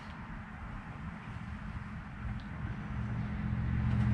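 Smartphone on speakerphone while a call connects: a low, steady hum of line noise that grows louder in the last second.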